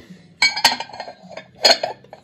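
Glass lid of a clear pressed-glass covered butter dish clinking against the dish as it is handled, two short bursts of ringing clinks about a second apart.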